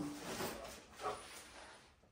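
A Bernedoodle getting down from a small trampoline and walking across a concrete garage floor with its leash dragging: soft scuffing and rustling that fades out before the end.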